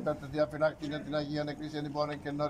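A man's voice reciting a Greek prayer quickly, on a nearly level pitch.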